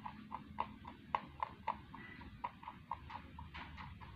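Rabbit crunching dry food pellets from its bowl: a quick, steady run of crisp clicks, about four a second.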